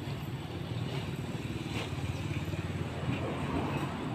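Motor vehicle engine running steadily at idle, a low steady hum.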